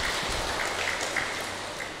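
A seated audience applauding, the clapping slowly dying away.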